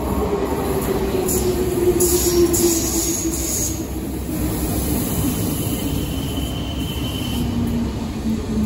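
RER B MI79 electric multiple unit running into the station and slowing, its motor whine falling steadily in pitch over the rumble of wheels on rail. Bursts of hiss come about two to four seconds in, and a thin high squeal is heard for a couple of seconds in the second half.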